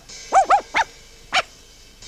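A small dog yapping: four short yips, the first two close together, the last after a pause of about half a second.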